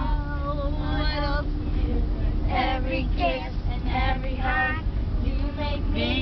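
Children and young women singing together without instruments, in phrases with short breaks, over a steady low rumble inside a vehicle.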